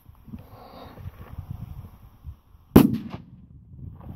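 A P1 firecracker (Böller) goes off with one sharp, loud bang almost three seconds in, followed a moment later by a fainter second crack. Wind rumbles on the microphone around it.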